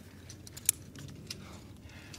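Metal climbing gear clinking: a few light, sharp clicks of carabiners and quickdraws, the clearest about two-thirds of a second in, as a climber on a rope handles his gear.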